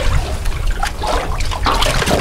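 Seawater lapping and sloshing against the hull of a small boat, with irregular small splashes, over a steady low rumble of wind on the microphone.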